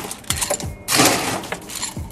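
Ice cubes being scooped and dropped into a cocktail glass: rattling clinks with a short clatter about a second in.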